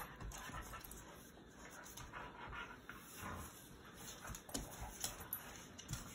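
Two dogs play-wrestling, heard faintly: soft panting and scuffling, with a few light knocks.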